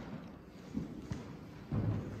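Low room noise in a meeting room, with a few short soft knocks and a louder low thump near the end.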